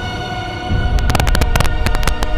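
Sustained film-score music, joined about halfway through by a rapid string of gunshots, around eight a second, like machine-gun fire.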